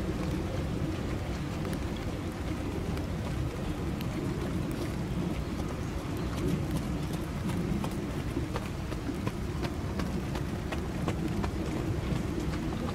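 Rain falling: a steady low rush with scattered, irregular sharp drop ticks.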